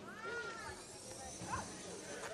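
Faint, high-pitched voices of onlookers: a drawn-out cry that rises and falls, then a short rising cry about a second and a half in, over a low murmur of chatter.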